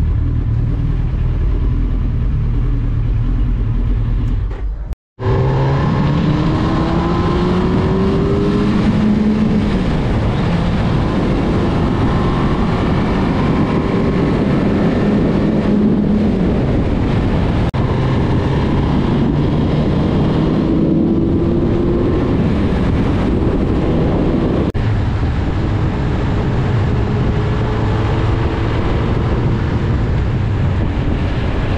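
Suzuki Hayabusa's inline-four engine rumbling at low speed, then, after a sudden cut, pulling hard on the open road, its pitch rising several times as it accelerates, with wind rushing over the microphone.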